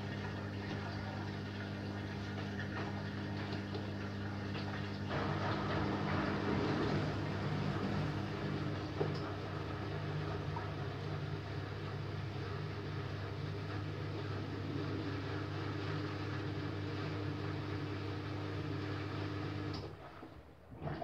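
Miele Softtronic W5820 front-loading washing machine running a wash cycle: a steady low hum with water noise in the drum. The sound gets louder and changes about five seconds in, then settles to a steady hum and stops abruptly at the end.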